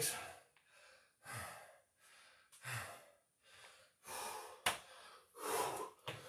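A man breathing hard and rhythmically, winded from a set of burpees: a louder breath comes about every second and a half, with quieter ones in between. One sharp click is heard a little before the end.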